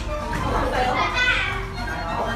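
A group of young children talking and calling out over one another, with music playing underneath.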